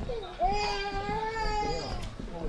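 A young child's long, drawn-out whining cry held at a steady high pitch. It starts about half a second in and lasts about a second and a half.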